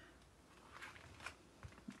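Near silence, with a few faint, soft scraping strokes as heavy acrylic gel medium is spread across paper.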